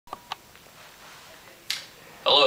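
Quiet room tone with two quick faint clicks right at the start. A short, sharp breath-like hiss comes near the end.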